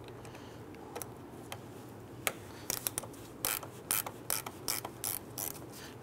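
Ratchet with a 10 mm socket clicking as it loosens a battery terminal nut. A few faint clicks come in the first two seconds, then a steady run of about three clicks a second.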